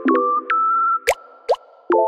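Upbeat electronic background music: short keyboard chords with crisp attacks, and two quick rising pitch slides a little after a second in, followed by a brief lull before the chords return.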